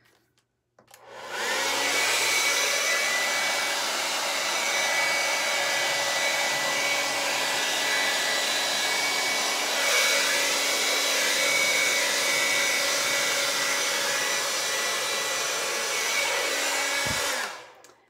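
Handheld hair dryer switched on about a second in, its motor whine rising quickly into a steady blowing rush, then switched off near the end as the motor winds down.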